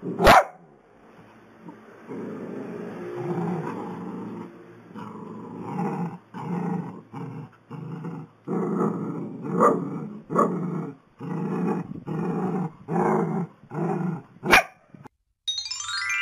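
Small dog growling, then a run of short growling barks, roughly one every two-thirds of a second. A sharp knock comes at the start and another near the end.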